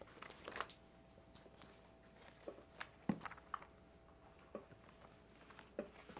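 Bible pages being turned and leafed through by hand: faint, scattered paper rustles and soft ticks.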